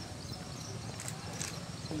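Outdoor ambience with a steady low hum, a few short sharp knocks, and faint voices near the end.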